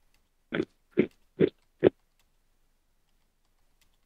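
A person's voice making four short, quick bursts about half a second apart in the first two seconds, like grunts or stifled laughs.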